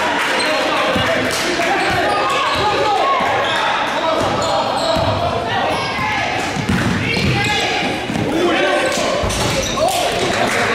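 Basketball bouncing on a hardwood gym floor, a handful of separate thuds, under voices of players and spectators calling out in an echoing gym.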